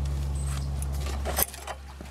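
A steady low mechanical hum that cuts off suddenly about one and a half seconds in, with a light metallic jingle just before it stops.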